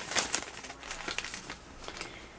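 Crinkling and rustling of paper and plastic being handled: a run of short, irregular crackles.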